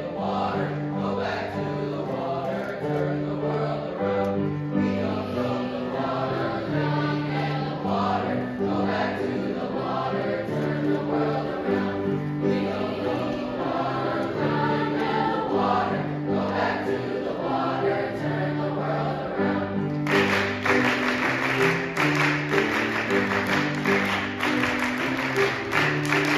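Children's choir singing a feel-good, Jamaican-style song to piano accompaniment. About twenty seconds in, a bright, rattling percussion joins in.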